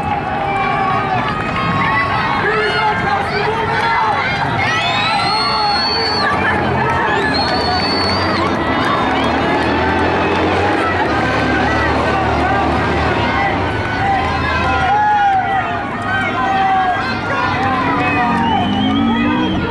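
Track-meet crowd cheering and shouting encouragement to runners in an 800 m race, many voices overlapping, with two shrill high-pitched yells about five and seven seconds in.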